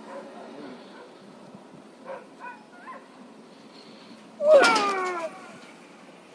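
A person's loud yell, gliding down in pitch over about a second, as the rope jumper leaps off the roof; before it, only faint murmurs.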